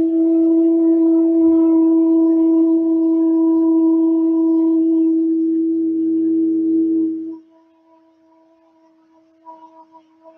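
A woman's voice holding one long, steady sung tone (vocal toning, an 'oo'-like vowel) that stops sharply about seven seconds in; a faint tone at the same pitch lingers after it.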